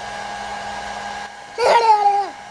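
Handheld hair dryer running steadily, stopping after a little over a second. A short burst of a person's voice follows near the end and is the loudest sound.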